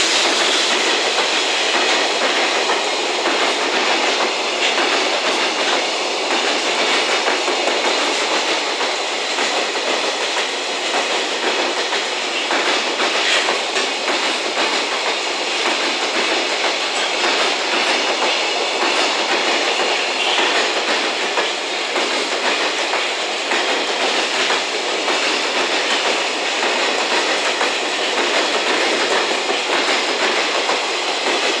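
A long JR Freight container train rolling past at speed behind an EF210 electric locomotive. Its wagons' steel wheels make a steady, loud rolling noise on the rails, with a regular clickety-clack as they cross rail joints.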